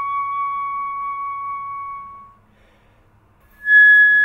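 A flute holds one long note that fades out a little over two seconds in. After about a second of near silence, a higher note begins near the end.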